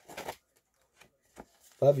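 Paper CD booklet inserts rustling as they are handled and opened: a short rustle near the start, then a couple of faint ticks of paper.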